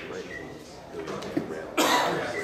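Low murmur of voices, then a single loud cough near the end.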